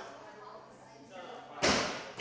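A loaded barbell with bumper plates clanking once, loudly, about one and a half seconds in, as the lifter sinks into the bottom of a front squat, with a short ring-out.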